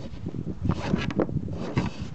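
A rope and its deck fittings being worked loose by hand to release a trimaran's daggerboard: a run of irregular knocks, clicks and rustling.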